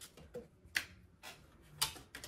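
A few soft, sharp clicks of tarot cards being handled as a card is drawn from the deck, the clearest just under a second in and another near the end.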